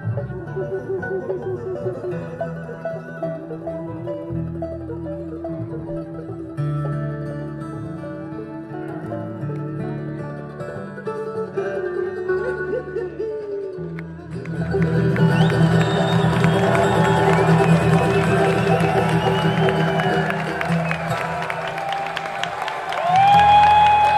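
Acoustic bluegrass band (mandolin, acoustic guitar, fiddle and upright bass) playing a tune; about two-thirds of the way through, the audience's cheering and applause swell up loudly over the music, with a loud whoop near the end.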